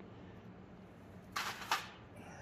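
Faint steady low hum, with a breathy spoken "all right" beginning near the end.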